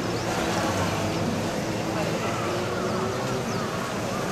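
Bees buzzing among wisteria blossoms, a steady hum with a murmur of visitors' voices behind it.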